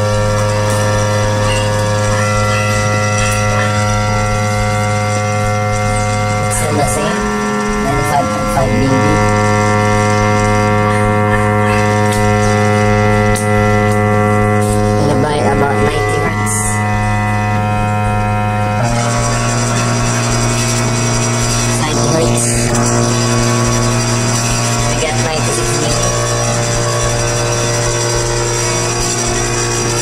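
Small bass speaker driver playing a steady low sine test tone, buzzy with strong overtones, that steps up to a higher pitch about two-thirds of the way through, as the tone generator is moved up the bass range.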